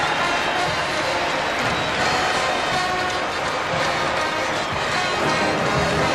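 College pep band brass, sousaphones among them, playing held notes over crowd noise in a basketball arena.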